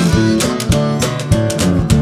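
Instrumental passage of a song: guitar over a bass line, with a steady drum beat, in a short break between sung lines.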